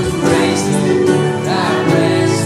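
Contemporary worship band playing and singing a praise song: several voices over keyboard, bass guitar, acoustic guitar and drums.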